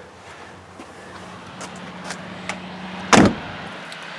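A steady low hum in a minivan's cabin, then one loud thump about three seconds in as someone climbs out through the open front door.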